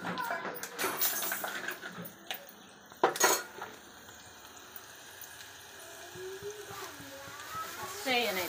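A steel spoon stirring and clinking against steel cooking pots on a gas stove, with two sharp knocks about three seconds in, after which it goes quieter.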